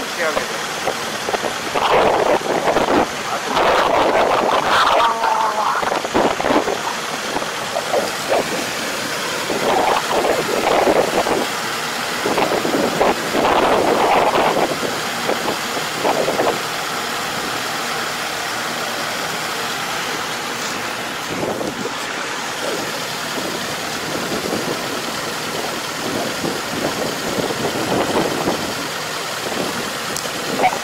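Farm tractor's diesel engine running steadily while it works the flooded paddy, with irregular gusts of wind buffeting the microphone, strongest in the first half.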